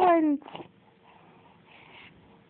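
A three-month-old baby cooing: a drawn-out vowel that slides down in pitch and ends about half a second in.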